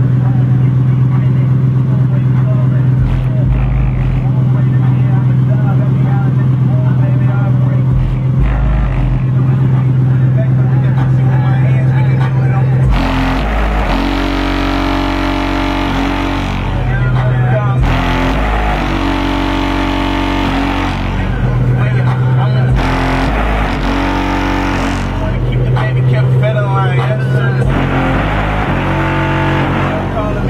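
Loud bass-heavy music from two Kicker CVX 15-inch subwoofers driven by a Kicker ZX2500.1 amplifier, heard from outside the vehicle with its windows shut. A deep bass note holds steady for about the first thirteen seconds, then the bass line breaks into shorter, deeper notes.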